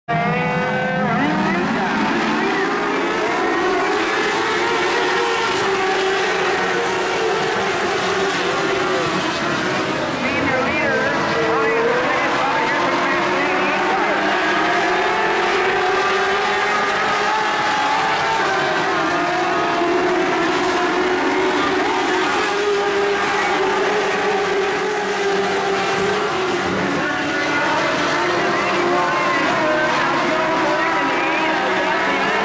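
Several Mod Lite dirt-track race cars running together around the oval. Their engines overlap, each one's pitch slowly rising and falling as they circle.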